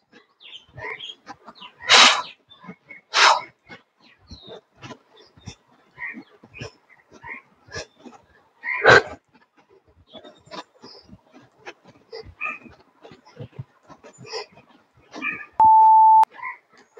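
A workout interval timer beeps once near the end, a steady tone of about half a second as the countdown runs out and the exercise set ends. Before it, scattered short clicks and a few louder bursts of noise.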